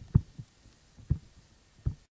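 A few short, low thumps, irregularly spaced over about two seconds, the first the loudest, with faint background in between; the sound cuts off suddenly at the end.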